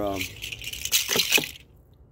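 A percussion shaker shaken for about a second and a half, a hissy rattle with a few sharper strokes near the end before it dies away.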